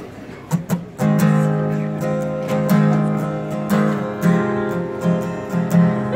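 Acoustic guitar strummed: a couple of sharp single strokes, then steady chord strumming from about a second in.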